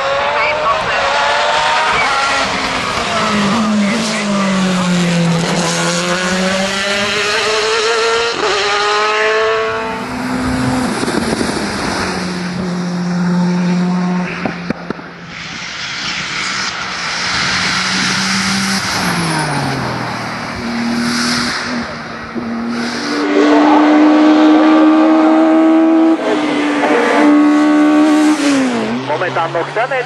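Race car engines on a hill climb, one car after another, each pulling hard with the pitch climbing through a gear and dropping sharply at each upshift or lift for a bend. The loudest stretch is a high, steady engine note past the two-thirds mark, followed by a quick falling pitch near the end.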